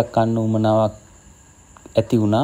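A man's voice with drawn-out, level-pitched syllables, breaking off about a second in and starting again at the end. A thin, steady, high-pitched tone runs underneath.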